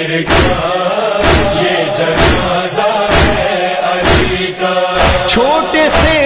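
Voices chanting a noha, a Shia lament, together over a steady beat about once a second from hands striking chests (matam).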